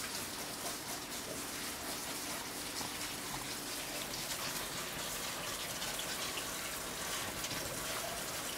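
Tap water running steadily in a stainless steel kitchen sink, splashing over strawberries being rinsed in a colander.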